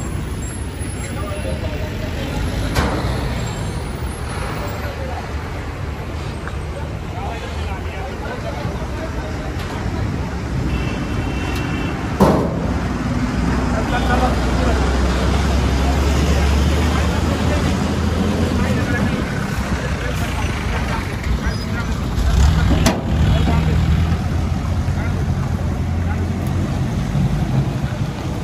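Mahindra Bolero's diesel engine running at low revs as the SUV creeps down a car carrier's steel ramp, over a steady hum of road traffic. A single sharp knock comes about halfway through, and the engine drone grows louder in the second half.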